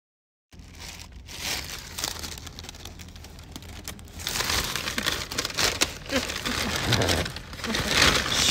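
A paper takeout bag crinkling as it is opened, loudest from about four seconds in, over a low steady car-cabin hum.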